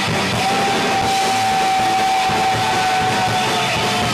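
Industrial rock band playing electric guitar and drums, with one high note held from about half a second in to the end.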